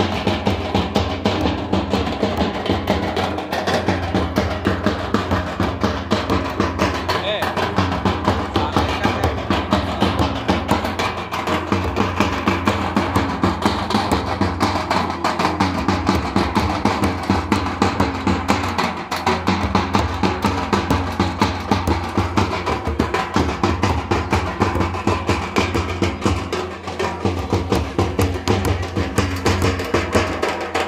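Live folk dance drumming: a mandar barrel drum and a nagara kettle drum played together in a steady beat of about three strokes a second, with people's voices over it.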